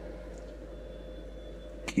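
A pause in speech: steady low electrical hum and room tone. A short click comes near the end, just as a man's voice starts again.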